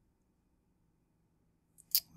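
Near silence, then a computer mouse click near the end: a faint tick followed by one sharp click.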